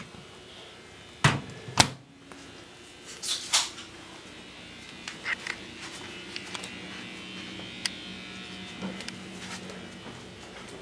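Two sharp knocks a little over a second in, then scuffing and a few small clicks, with a steady low hum in the second half: knocks and handling noises in a small room.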